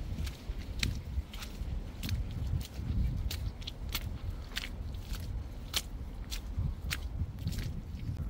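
Footsteps of a person walking on a wet, very muddy footpath, a short step sound about every half second, over a steady low rumble.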